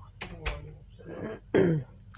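A person clearing their throat in several short bursts, the loudest near the end.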